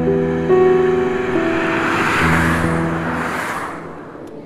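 Background music of long held notes, with a car passing by on the road: its noise swells to a peak about two seconds in and then fades away.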